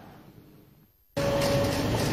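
Faint room tone, a brief dead silence, then about a second in an abrupt switch to louder steady background noise with a faint hum, the ambient sound of a crowded room before anyone speaks.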